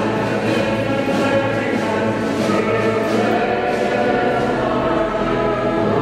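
Background music: a choir singing long held notes in slow chords with instrumental accompaniment.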